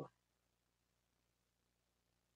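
Near silence: room tone with a faint steady low hum, just after a spoken word cuts off at the very start.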